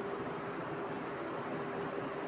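Steady room noise: an even hiss with a faint, constant hum, and no distinct sounds standing out.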